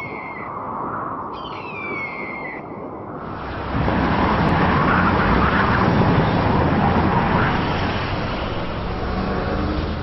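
Two descending bird cries in the first three seconds, over a steady vehicle noise that gets louder about three and a half seconds in.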